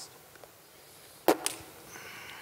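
A sharp snap about a second in, with a fainter second snap just after it, over quiet room tone.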